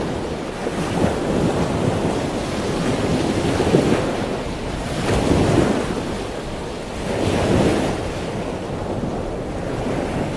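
Rushing water and waves with wind noise, a steady rush that swells louder about halfway through and again about three-quarters through.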